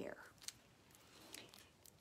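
Near silence, broken by a faint click about half a second in and a soft rustle later as a hardcover picture book is handled and lifted.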